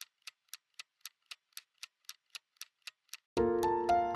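Clock ticking evenly, about four ticks a second. Near the end, music with sustained keyboard chords starts abruptly and is louder than the ticks.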